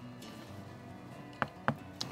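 Two sharp clicks of game pieces set down on a game board, about a quarter second apart near the end, over faint background music.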